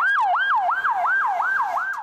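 Police car siren in a fast yelp, its pitch sweeping up and down about four times a second.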